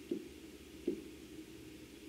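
Quiet room hum broken by two faint, soft knocks about a second apart, as a pen touches an interactive whiteboard while lines are drawn.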